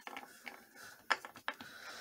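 Spent bullets clicking and scraping against a bulletproof plastic window panel as fingers pry at a bullet stuck in it, with two sharper clicks about halfway through.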